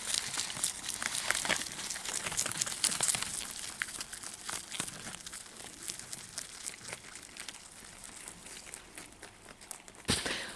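A lop-eared rabbit chewing nasturtium leaves and stems close up: a quick, irregular run of small crunchy clicks that thins out toward the end.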